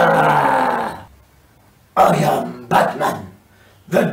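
A man's voice impressions: the tail of a Joker-style cackle trailing off in the first second, then, after a short pause, short gravelly growled sounds in a Batman-style voice.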